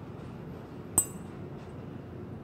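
A single sharp clink about a second in, with a brief high ring: the metal damper motor tapping against the glass cup of water it stands in.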